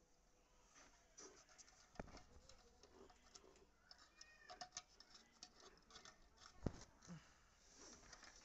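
Faint small clicks and taps of wire ends and a screwdriver on an electric iron's terminal screws, mostly near silence, with one click about two seconds in and a sharper one late on.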